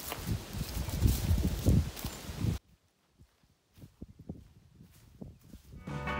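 Footsteps walking through dry fallen leaves over a steady outdoor hiss, cutting off abruptly about two and a half seconds in, leaving only faint soft taps.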